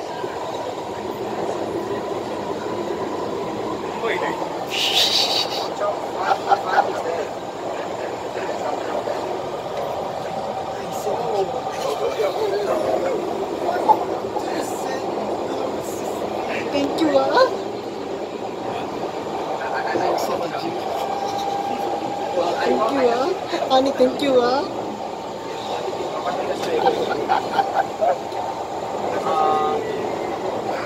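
Cabin noise of a Kawasaki Heavy Industries C151 MRT train running between stations: a steady rumble from the wheels and running gear, with voices breaking in now and then.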